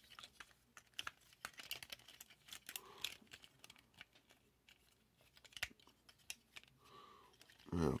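Small plastic clicks and rubbing from a Transformers Kingdom Rhinox action figure as its joints and panels are bent and pulled during transformation. There is a quick, irregular run of clicks in the first three seconds, then only a few scattered ones.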